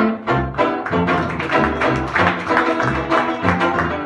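A 1920s-style jazz band playing an instrumental chorus: saxophones carry the melody over steady strummed banjo chords and a tuba bass line moving about two notes a second.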